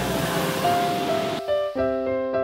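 Bath water rushing and bubbling in an onsen pool for about a second and a half, cut off suddenly. Gentle electric-piano music with held notes then carries on.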